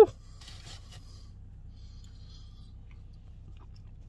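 Faint closed-mouth chewing of a big bite of a toasted bagel sandwich, with a short crunchy rustle about half a second in and a few faint crackles later, over a low steady background hum.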